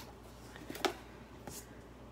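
Quiet room with a few faint handling sounds of packaging: a short tap or rustle just under a second in, the loudest, and a softer one about half a second later.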